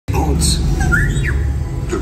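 Ride sound effects: a deep steady rumble with a few quick chirping, squawk-like pitch glides about a second in, and voices under it.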